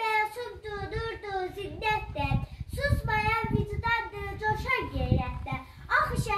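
A young girl declaiming a poem in Azerbaijani in a high, sing-song voice, with short breaks about two seconds in and near the end.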